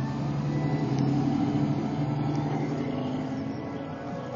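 Classic pickup truck's engine running at low speed as the truck drives slowly past, a steady low hum that eases off toward the end.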